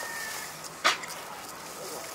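A common dolphin surfacing and exhaling through its blowhole: one short, sharp puff of breath about a second in.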